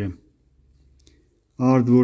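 A man's voice reading aloud, breaking off at the start for a pause of about a second and a half before going on near the end. A faint single click falls in the middle of the pause.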